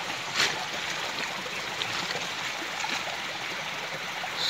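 Shallow creek water flowing over stones, a steady rushing trickle, with one brief tap about half a second in.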